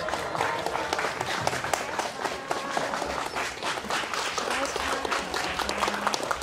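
A small group of people applauding, many hands clapping irregularly, with voices mixed in.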